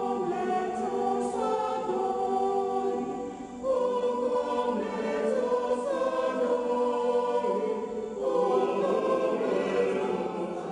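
Mixed church choir singing a hymn in long held chords, with new phrases beginning about four seconds in and again past eight seconds.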